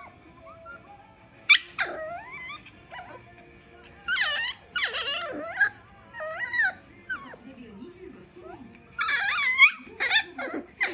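A puppy whining and yipping in a series of short, high, wavering calls, the loudest burst near the end.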